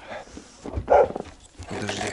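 A dog barks once, a short, loud bark about a second in.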